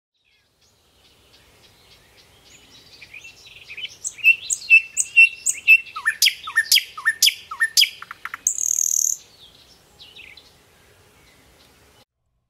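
Songbirds singing, faint at first, then a loud run of repeated sharp chirps about two a second, followed by a short high buzzy note, then only faint calls.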